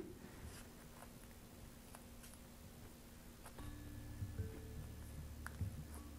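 Faint rustling and small clicks of masking tape being pressed and wound tightly around the end of a cotton cord by hand. About halfway through, a faint low hum with a few soft held tones comes in.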